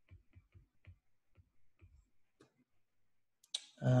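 Faint, irregular clicks of a stylus tapping on a tablet's glass screen while handwriting a word, about a dozen over two and a half seconds.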